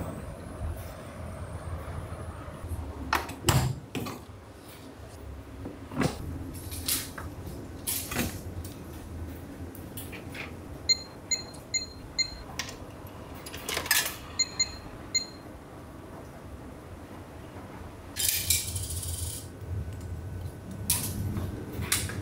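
A self-service laundromat payment terminal beeping as its touchscreen is pressed: two quick series of short electronic beeps, about five and then three. Scattered clicks and knocks of handling the machines sound around them, over a low hum.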